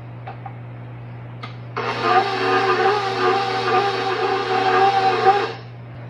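Stand mixer motor running steadily, beating sausage and biscuit mix with its paddle; it starts about two seconds in and stops shortly before the end. A couple of faint clicks come before it starts.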